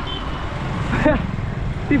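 Steady low rumble of street traffic and air moving past a moving action camera, with a single short spoken word about a second in.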